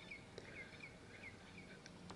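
Near silence with a faint bird chirping: a quick series of short, high chirps.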